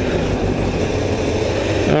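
Motorcycle engine running steadily under a loud, even rush of wind noise on the microphone while riding.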